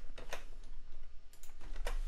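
Typing on a computer keyboard: a run of irregularly spaced light key clicks.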